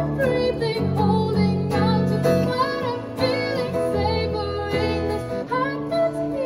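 A woman singing a slow, held melody into a microphone, accompanied by acoustic guitar chords.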